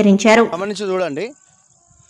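Speech for a little over a second, then a faint, steady, high-pitched insect trill carrying on alone.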